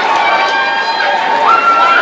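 Loud crowd noise in a school gymnasium, with long, high-pitched yells held over the din; one yell jumps higher about one and a half seconds in.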